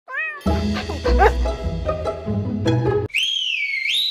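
TV show opening theme music with a heavy bass beat. It opens with a brief high gliding call, and in the last second a single high whistle swoops down and back up, then holds steady.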